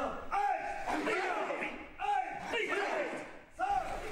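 Three short shouts, about a second and a half apart, from a karate class drilling punches in unison, echoing in a large hall.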